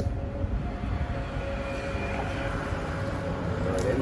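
A low, steady rumble with faint steady tones above it; a brief click at the start and another near the end.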